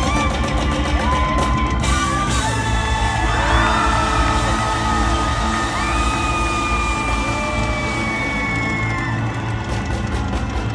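Live rock band playing in an arena, loud and full with heavy bass, while the crowd whoops and yells over it. Long held high notes sound through the second half.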